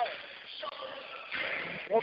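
Indistinct background voices over a steady haze of arena noise, coming through a narrow-bandwidth radio broadcast feed.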